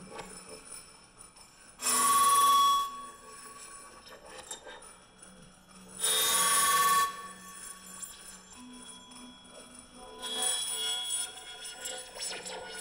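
Experimental live music: three bright, ringing bursts about a second long and about four seconds apart, the last one softer, over a faint steady low hum.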